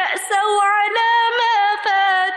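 A woman's voice chanting Quranic Arabic in melodic recitation (tilawah), with long held notes bending up and down.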